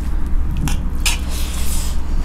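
Wet squishing of rice and egg curry gravy being mixed on metal plates by hand and with a spoon: two short strokes, then a longer one near the end, over a steady low hum.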